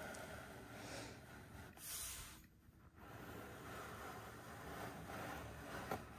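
Faint scraping and rubbing of plastic display bases being slid and turned by hand across a tabletop, in soft swishes about one and two seconds in, a short pause, then a steadier rub.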